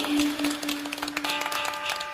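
Outro music: one long held note over a run of sharp percussion hits.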